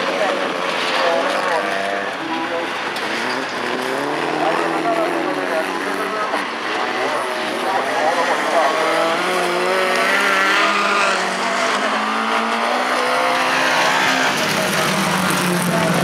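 Several folkrace cars racing on a gravel track, their engines revving up and down as they accelerate and shift gears.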